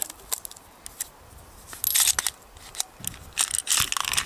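Handling noise of a torn latex condom being worked on a Glock 17 pistol's slide: scattered small clicks and rubbing, with short scratchy stretches about two seconds in and again near the end.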